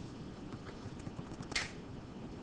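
A few faint computer mouse clicks over quiet room tone, with a short hiss about one and a half seconds in.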